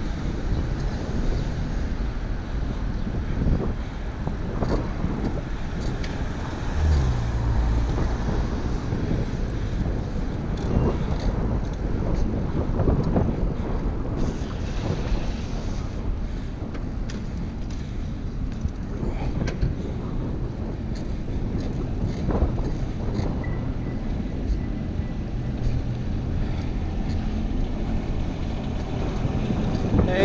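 Wind rushing over the microphone of a bike-mounted action camera while riding through city traffic, with a steady rumble of street traffic underneath. About seven seconds in, a deeper hum comes up for a couple of seconds.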